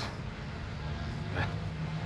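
Low steady background rumble, with one short spoken word a little past halfway.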